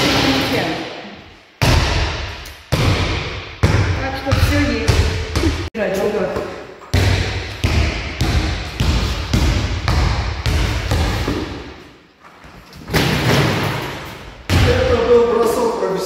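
A ball bouncing repeatedly on a sports-hall floor, a thud roughly once a second with a short echo after each in the large hall.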